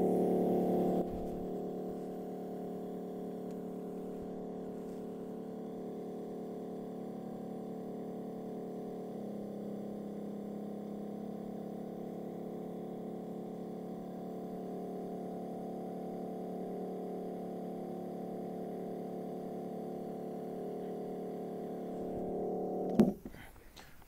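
Aircrete foam generator running on compressed air at about 40 psi, foam pouring from its wand into a bucket: a steady hum that cuts off sharply about a second before the end when the foot pedal is released.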